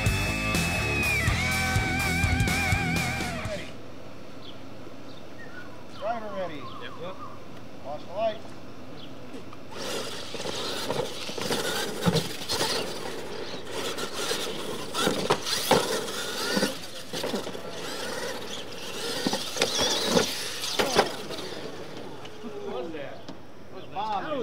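A short music sting, then radio-controlled monster trucks racing on a dirt track. From about ten seconds in there is a dense run of clicks and knocks as the trucks run over the ramps.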